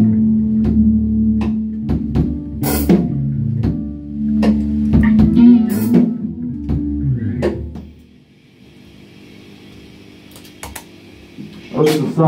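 Rock band rehearsing: two electric guitars, bass guitar and drum kit playing together with regular drum hits. About eight seconds in the band stops and the last notes die away, leaving a low amplifier hiss.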